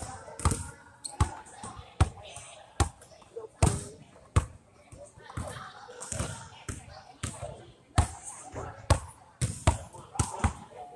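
Basketballs bouncing on a hardwood gym floor, sharp thuds coming roughly once a second at an uneven pace, with a quicker pair near the end.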